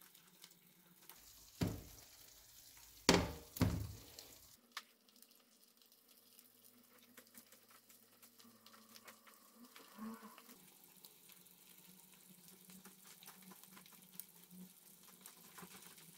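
Eggs frying in oil in a Tefal Unlimited non-stick pan, a faint crackling sizzle. In the first few seconds there are three sharp knocks as the pan is moved by its handle on the glass induction hob.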